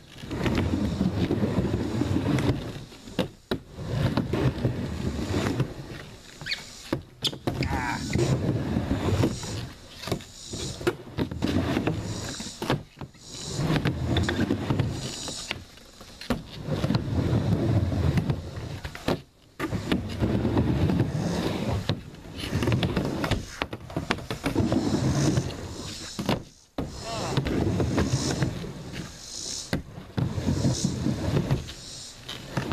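Skateboard wheels rolling on a plywood bank ramp: a rumble in runs of a few seconds as the board rolls up and down, broken by brief drops in level, with a few sharp knocks of the board.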